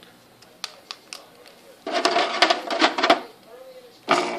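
A few light clicks and taps of plastic wrestling action figures being handled in a toy ring. About two seconds in, a voice sounds for over a second without clear words.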